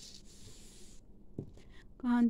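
Faint rustling as knitted swatches and yarn are handled and slid across a cloth-covered table for about a second, then a single light tap about halfway through, as of a knitting needle touching the table.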